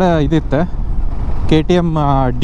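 A man talking over the steady low rumble of wind and engine from a motorcycle being ridden at city speed. His voice stops for about a second in the middle and then comes back.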